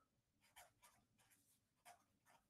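Faint scratching of a pen writing on paper, in a series of short separate strokes.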